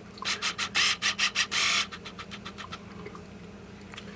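Close handling noise from a hand rubbing and scraping, a quick run of about a dozen short rubbing strokes in the first two seconds, tailing off into a few weaker ones.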